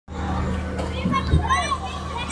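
Children's voices calling and chattering at play, high and rising and falling, over a steady low hum.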